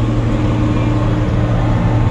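Tractor diesel engine running steadily under way, heard from inside the cab as a constant low drone with a steady hum above it.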